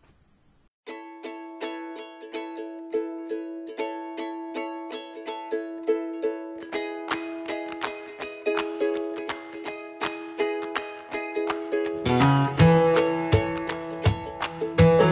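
Background music: a light plucked-string melody that starts about a second in, with deeper bass notes joining near the end and the music getting louder.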